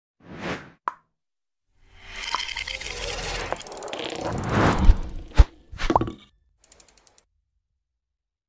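Sound effects of an animated logo intro. A short whoosh and a click come first, then a swelling rush of noise that builds to two sharp hits about five seconds in. Another brief whoosh follows, and then a quick run of faint, light ticks.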